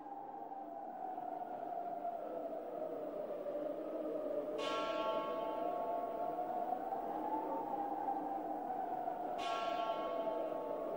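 Ambient intro of an uplifting trance track: a synth pad slowly swells and glides up and down in pitch, with a bell-like chime sounding twice, about five seconds apart.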